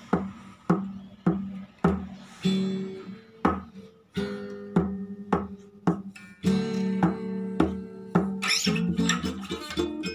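Acoustic guitar strummed in a steady rhythm of about two strums a second; from about six and a half seconds in the chords ring on longer between strums.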